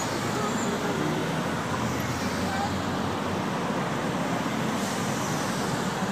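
Street traffic: cars and a van driving past close by, a steady rumble of engines and tyre noise.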